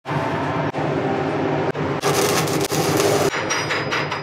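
Shielded metal arc (stick) welding with an Eagle 606 hardfacing electrode: the arc crackles and hisses steadily, changing sharply about halfway through to a brighter hiss, then thinning out near the end.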